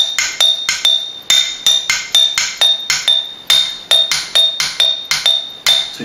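Glass jam jars standing on bubble wrap struck with thin sticks in a steady pulse, about three strikes a second. Some jars give a short high ring, others a duller clink.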